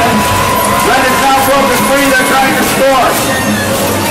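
An announcer's voice and music over an arena public-address system, loud and busy, with a steady tone held through the first second.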